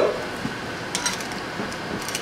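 Faint clicks and clinks of hot glass canning jars and their metal lids being handled, over a steady low hiss.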